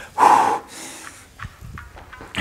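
A man's short, heavy breath out, catching his breath after a hard exercise set, followed by a short faint knock about a second and a half in.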